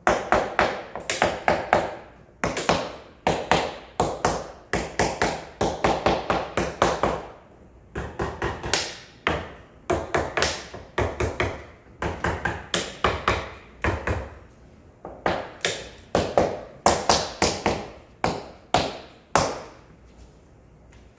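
Small hammer tapping on a large wooden panel, in quick runs of sharp strikes, about three or four a second, each with a short ring, broken by brief pauses.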